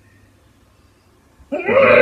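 Quiet for about a second and a half, then a girl's voice starts a loud, drawn-out whine in mock crying that wavers toward its end.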